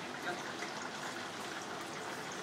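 Steady hiss and hum of a commercial kitchen, with faint voices in the background.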